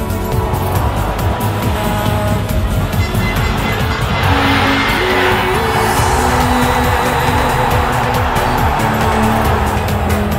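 Background music with a steady beat. About four seconds in, a loud stadium crowd starts cheering and keeps on under the music.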